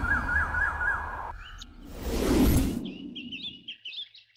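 Background music with a repeated warbling note fades out, and a low swell rises and falls near the middle. Small birds then chirp rapidly and high-pitched over the last second or so.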